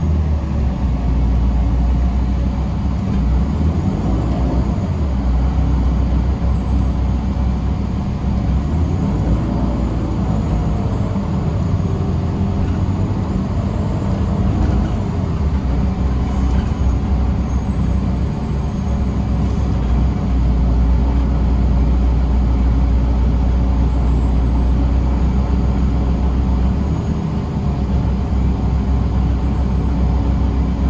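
Inside a moving 2017 Gillig BRT 40 ft transit bus: steady engine and drivetrain rumble with road and tyre noise. The engine note rises and falls a few times in the first half as the bus changes speed.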